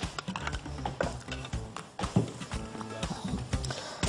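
Soft background music with scattered light clicks and knocks of kitchen utensils being handled at the stove, at irregular moments.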